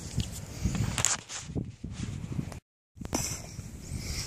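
Irregular rustling with a few soft knocks and clicks in grass, the sound of hands and footsteps moving about, at a moderate level. The sound cuts out completely for a moment about two and a half seconds in.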